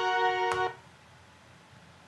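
Duolingo app sound effect: a bright chord of several held tones rings on, with a sharp click about half a second in. It cuts off after under a second, leaving quiet room tone.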